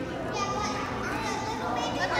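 Indistinct background chatter of children and other visitors, overlapping voices with no clear words.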